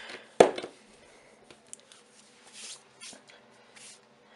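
A glass spice jar being handled on a kitchen counter: one sharp knock about half a second in, then a few faint rustles and scrapes.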